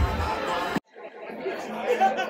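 DJ dance music with a steady bass beat over crowd chatter, cut off suddenly under a second in. It is followed by quieter room sound with indistinct talking.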